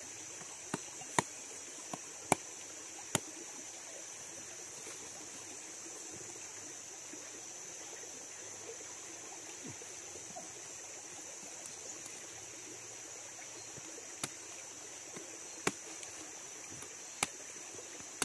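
Sharp knocks of a machete blade striking the spiky husk of a fallen durian to open it: a few strokes in the first three seconds, a pause, then more near the end. A steady high-pitched drone runs underneath.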